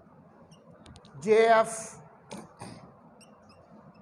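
Whiteboard marker squeaking and scratching in short strokes as words are written on the board. A man says one syllable ("J") slowly, about a second in.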